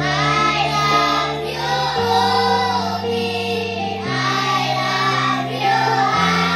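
A group of children singing together over a musical accompaniment whose held low chords change about every two seconds.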